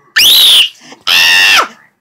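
A young girl letting out two loud, very high-pitched squeals, each about half a second long, the first sliding upward and the second falling off at its end.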